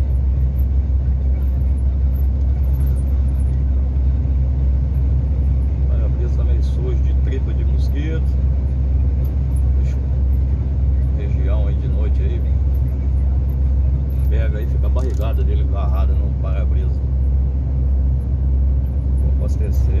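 Semi-trailer truck cruising on the highway, heard from inside the cab: a steady deep drone from the engine and the road.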